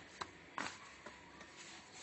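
Hands working a soft, oiled yeast dough on a tray: two short, soft contact sounds in the first second, then only faint handling noise.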